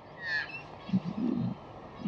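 A bird calling: a brief chirp with a falling whistle about a quarter second in, followed by a few faint short notes.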